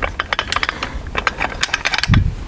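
Metal clicks and rattles of an AutoSiphon soda syphon refiller's hinged gate and clamp arm being closed and lined up by hand: a quick, irregular series of clicks.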